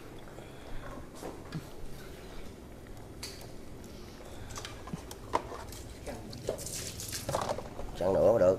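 Metal spatula scraping and knocking against a large metal pan while chunks of pork in a thick sauce are turned over, with soft wet squelches from the meat; the knocks are irregular, the sharpest about five seconds in.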